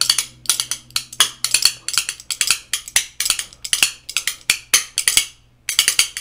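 A pair of metal spoons played as a rhythm instrument, clacking in a quick steady beat of about three to four strikes a second. The beat breaks off briefly near the end, then a few more clacks follow.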